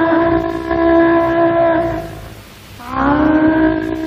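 Film-song excerpt: one long held melodic note of about two seconds, a brief dip, then a second long note that slides up into pitch about three seconds in.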